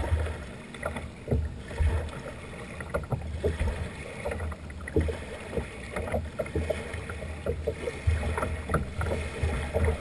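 Small waves lapping and slapping against the hull of a kayak at the water's edge, in irregular splashes and low knocks.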